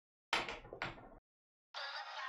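Two sharp knocks about half a second apart, each fading quickly.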